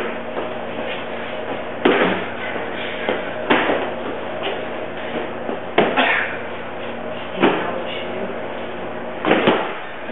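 A handful of sharp knocks and thumps, about five, spaced a second and a half to two seconds apart with a quick double one near the end, over a steady electrical hum.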